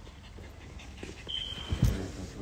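Phone being handled right against its microphone: rubbing and rustling, then a heavy thump near the end. Just before the thump comes a short, thin, high whine.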